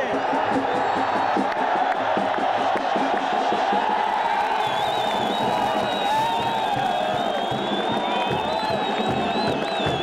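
A large stadium crowd of football fans cheering and singing together, a dense, steady mass of voices. A high, wavering whistle rises over the crowd from about halfway through.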